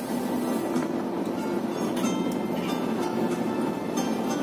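Bus interior noise while driving: a steady engine and road rumble with small rattles, with music playing over it.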